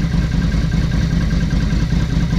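Yamaha XV250 Virago's air-cooled V-twin engine idling steadily as it warms up to temperature.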